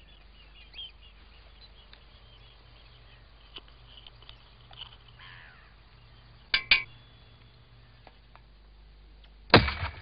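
Teaspoon of petrol in a steel firework mortar, set off by a spark plug, going off with a single loud bang near the end and firing a lager can out of the tube: a very rapid combustion rather than a true explosion. Before it, two light metallic clinks as the spoon and can are handled at the mortar's mouth.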